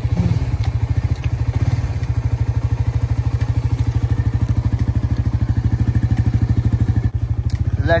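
Suzuki GSX-R150's single-cylinder four-stroke engine running steadily at low revs, an even, rapid train of exhaust pulses, with a brief dip about seven seconds in.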